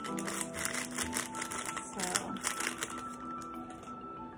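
A foil instant-coffee sachet crinkling as it is shaken out over a tumbler, over steady background music.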